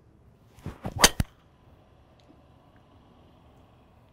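A golf driver swing: a short whoosh of the club through the air, then a sharp, loud crack about a second in as the PING G430 Max 10K driver head strikes the ball.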